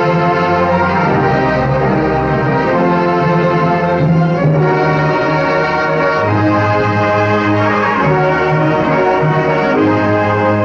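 Orchestral film score with brass to the fore, playing held chords that change every second or so over low sustained notes.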